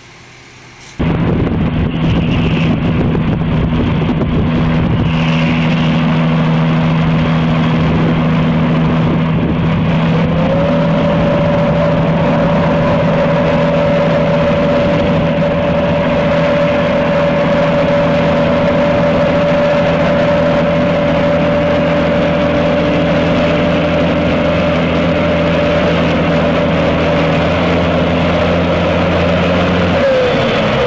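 Fuel tanker truck's engine running steadily as it drives through flood water, over a constant rushing noise; it starts suddenly about a second in, and about ten seconds in a whine rises and then holds steady.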